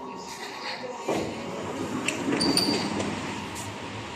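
Ambient noise at a shopping-centre entrance with indistinct background voices. The level steps up about a second in, followed by a few light clicks.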